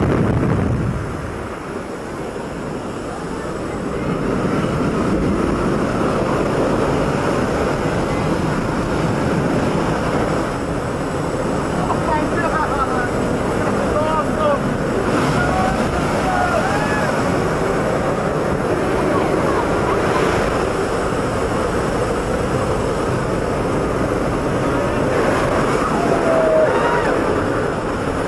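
Steady noise of a skydiving jump plane's engine and the wind rushing through its open cabin door. It dips briefly about a second in and is back to full strength by about four seconds.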